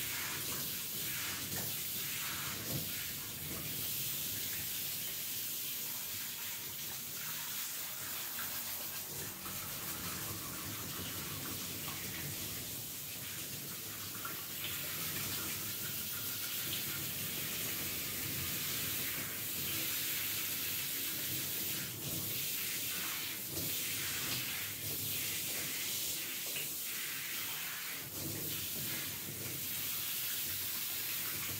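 Handheld shower sprayer running steadily onto wet hair and splashing into a barber's ceramic wash basin as the hair is rinsed.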